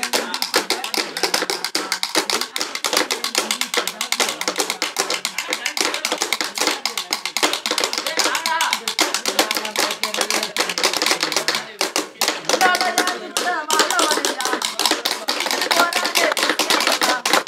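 Sticks beaten rapidly on lengths of bamboo and the ground in a fast, continuous beat, accompanying a gana song sung by male voices over it.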